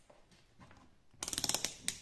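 A quick run of small sharp clicks and rattles, lasting about half a second, then one more click, as a switch and its multimeter test leads are handled.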